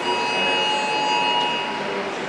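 A steady tone with several pitches at once, starting suddenly and holding for about a second and a half before it stops near the end.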